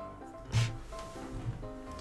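Soft background music: a slow melody of held notes, with one short noise about half a second in.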